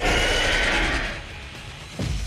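Cartoon dinosaur roar sound effect: a loud, rough burst that starts suddenly and fades over about a second into a low rumble, over background music.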